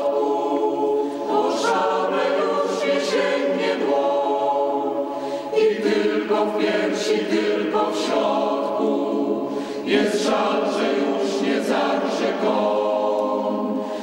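A choir singing a song in Polish: sustained phrases in harmony, with short breaks between lines.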